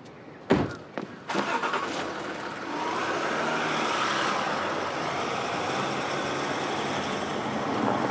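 Two car doors slam shut about half a second apart, then a car engine starts and keeps running steadily.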